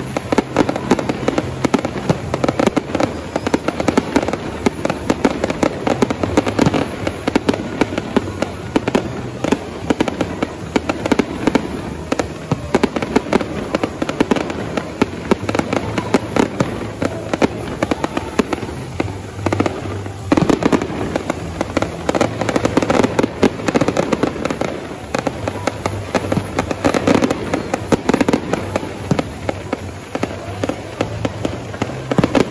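Fireworks display: a dense, continuous barrage of bangs and crackling from aerial shells bursting overhead. The barrage eases briefly about two-thirds of the way through, then resumes with a loud bang.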